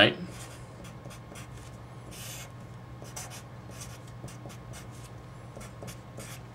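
Red Sharpie felt-tip marker writing on paper: a run of short scratchy strokes, one longer stroke about two seconds in, over a faint steady low hum.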